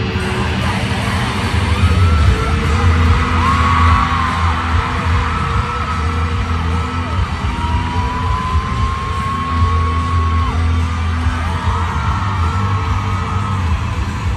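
Live band music played loud through an arena PA, with a heavy pulsing bass, over a crowd yelling and singing along. A long, slightly rising high note is held for about three seconds in the middle.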